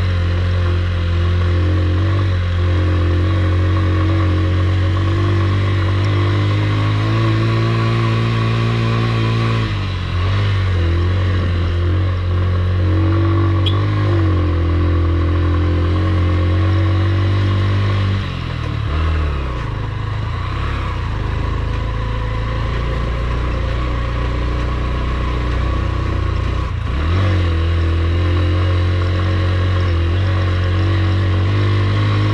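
Honda Livo's single-cylinder motorcycle engine running under load as the bike climbs a rough hill road. The engine note dips and recovers twice, about ten and about eighteen seconds in.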